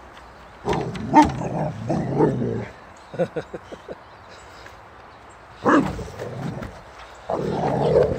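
Boxer dog barking in several loud bursts, with a quick run of short grunts about three seconds in.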